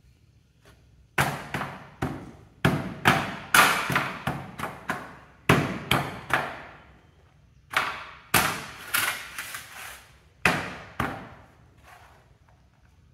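Soil being pounded with a round hand tool in a shallow steel tray: groups of sharp knocks, two or three a second, each dying away quickly, with short pauses between the groups.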